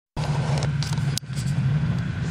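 Snowmobile engines idling with a steady low hum, which dips briefly a little over a second in.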